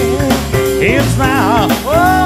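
Live blues-rock band playing loud and steady, with guitars and drums under a melody line that bends and wavers in pitch.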